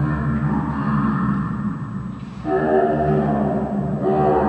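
A low, echoing drone of sustained tones, dipping briefly about two seconds in before it resumes.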